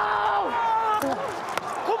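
Men yelling in celebration: long, drawn-out shouts over a steady stadium crowd din, with two short sharp hits about a second and a second and a half in.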